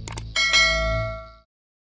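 Subscribe-button sound effect: two quick clicks, then a bright bell ding that rings for about a second over a low rumble, both fading out together.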